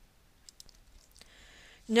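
A few faint clicks of a computer mouse, then a woman's narration starts again at the very end.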